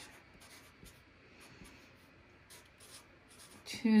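Felt-tip marker writing on paper: a run of short, faint scratching strokes as an equation is written.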